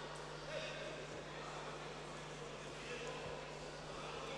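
Faint, indistinct voices in a large sports hall over a steady low hum of background noise.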